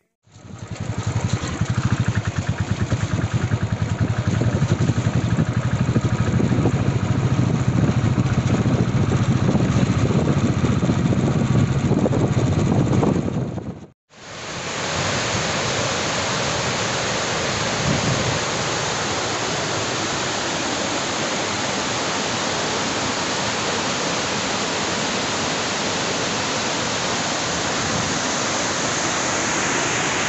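Steady rushing of muddy floodwater pouring over a concrete dam spillway and churning down the river below. Before that, for about the first half, a loud low rumble of unknown source cuts off abruptly.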